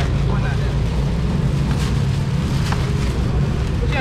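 Busy outdoor market background: a steady low rumble with faint crowd voices and a few light clicks.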